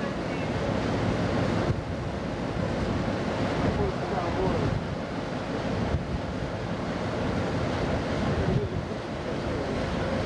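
Wind buffeting the camcorder microphone over the steady rush of sea water along a moving ship, a continuous noise with no clear breaks.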